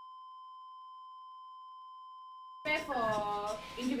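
Steady, unbroken electronic alarm tone from the resuscitation equipment, held on one pitch. For most of its length it sounds alone over dead silence, then voices come in over it about two and a half seconds in.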